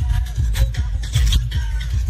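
Loud electronic dance music played through a truck-mounted DJ sound system, dominated by very heavy bass in a repeated beat.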